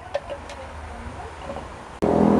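Low, steady rumble of wind on the microphone, with a couple of light clicks early on.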